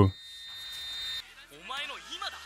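A faint, steady high-pitched tone for about a second, then a voice speaking faintly in the anime episode's soundtrack near the end.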